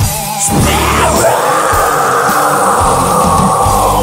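Heavy metal song with distorted electric guitars, bass and drums, and one long held high note that slides up about a second in.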